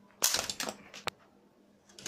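A homemade LEGO brick-shooting gun fires and its brick knocks down a LEGO-brick figure, which clatters apart in a quick run of plastic clicks and knocks. One more sharp click of a falling piece follows about a second in.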